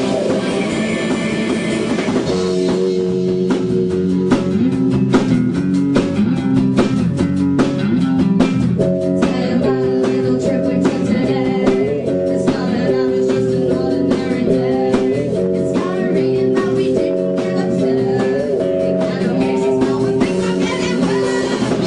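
A rock band playing live, with electric bass, guitar and a drum kit; the drums come in about two seconds in. A woman sings into the microphone over the band.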